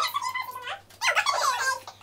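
Girls giggling and squealing in high voices, in two short bursts about a second apart.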